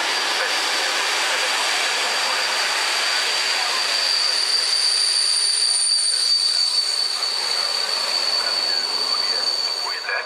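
Czech Railways class 854 diesel railcar and its coaches running past close by, with a steady rumbling rush and a steady high-pitched wheel squeal; a second, higher squeal joins about four seconds in.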